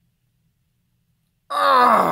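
Near silence, then about a second and a half in, a man lets out a long groan that falls in pitch.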